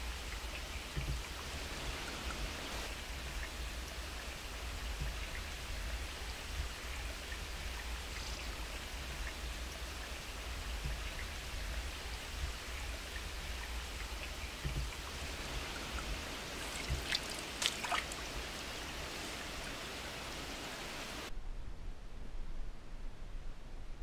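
Steady rushing of a nearby stream, with a few sharp clicks about three-quarters of the way through. Near the end the sound cuts suddenly to a duller hush.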